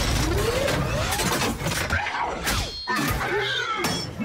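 Action-film battle sound effects of giant robots fighting: a dense, loud din of metallic crashes and shattering, with mechanical whirs gliding up in pitch, over music.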